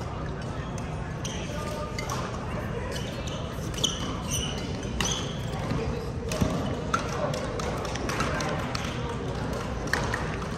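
Badminton rally: sharp racket strikes on the shuttlecock, about a second or more apart, and shoes squeaking on the court floor, over a steady murmur of voices in a large hall.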